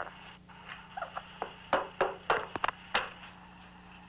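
Several short, sharp clicks and taps between about one and three seconds in, over a steady low electrical hum.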